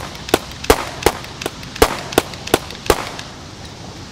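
A pistol fired rapidly, about nine sharp shots evenly spaced at roughly three a second, stopping about three seconds in.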